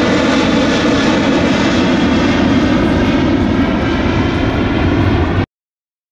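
Jet airliner's engines running loud and steady as it climbs overhead. The sound cuts off abruptly about five and a half seconds in.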